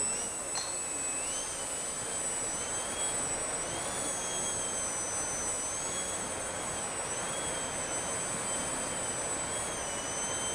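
Small electric RC aerobatic plane (Turnigy Piaget) in a nose-up hover, its motor and propeller whining, the pitch swelling and easing again every couple of seconds as the throttle is worked to hold the hover.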